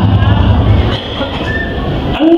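A man's voice speaking into a microphone and coming out loud through a loudspeaker system.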